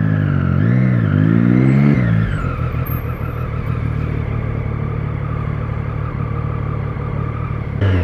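Motorcycle engine heard from the rider's seat, its revs rising and falling a few times in the first two seconds, then running steady at lower revs.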